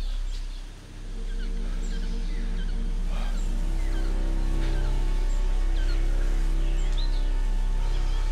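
Low, sustained film-score drone that swells slowly after a brief dip, under scattered short chirps and calls of forest birds.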